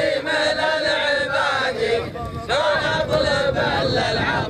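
Men's voices chanting a verse of Arabic tribal poetry in a slow, drawn-out melody, with a short break about halfway through.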